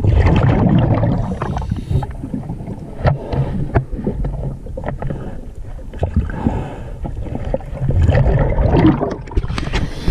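Scuba diver's regulator exhaust bubbles heard underwater through the camera housing, a bubbling rumble with crackle. It surges at the start and again near the end, like two exhalations.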